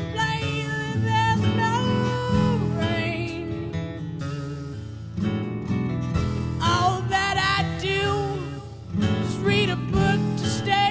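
A rock band playing live, with strummed acoustic guitar and drums under a male lead voice singing. The voice drops out for about two seconds midway, then comes back in.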